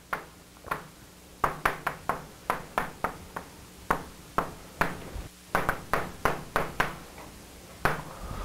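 Chalk on a blackboard while words are written: a quick, irregular series of sharp taps and clicks in short runs with brief pauses between them.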